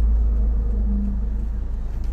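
Steady low rumble of a vehicle's engine and road noise, heard from inside the cabin.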